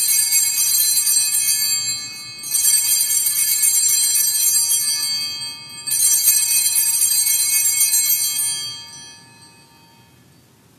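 Altar bells rung at the elevation of the chalice after the consecration: three shakes of high, many-toned ringing about three seconds apart, the last dying away near the end.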